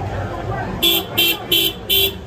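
A car horn beeps four times in quick, even succession, starting about a second in, over a crowd's chatter.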